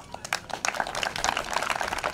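An audience clapping, many hands at once, swelling over the first half second.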